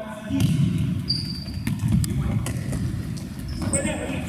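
Futsal play in an echoing sports hall: thuds of the ball being kicked and bounced on the floor, a couple of short high shoe squeaks, and players' voices calling.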